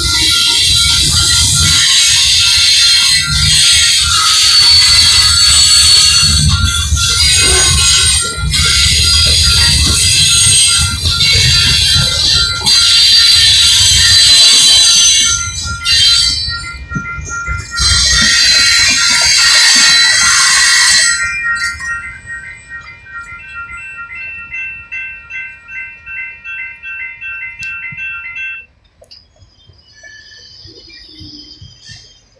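A freight train's cars rolling loudly over the rails through a grade crossing, with the crossing's warning bell ringing over the noise. About two-thirds of the way through the train has passed and the bell's repeated strokes ring on alone, then stop near the end.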